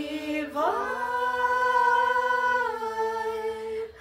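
A small a cappella vocal group singing long held chords in harmony, with no instruments. A new phrase slides up into place about half a second in, holds, and breaks off just before the end.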